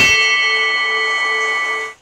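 Loud bell-like ringing with several steady tones over a low note pulsing about three times a second, opening with a sharp click and cutting off suddenly near the end.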